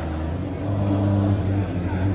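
Men's voices chanting dhikr in low, drawn-out tones, one held syllable after another, carried over a loudspeaker.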